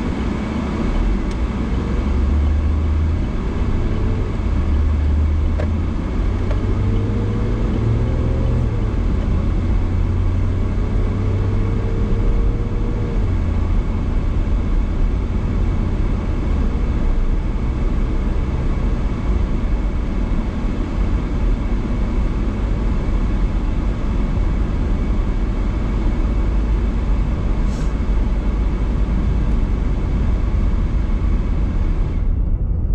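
Car cabin interior: the car pulls away from a stop, its engine note rising in a few steps as it shifts up through the gears. It then settles into a steady rumble of engine and tyre noise at cruising speed.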